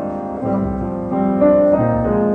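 Piano playing slow, sustained chords, with the chord changing a few times and no singing.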